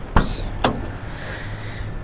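Cab door of a 2019 Suzuki Carry pickup being opened by its outside handle: two sharp clicks in the first second as the handle is pulled and the latch lets go, then the door swinging open.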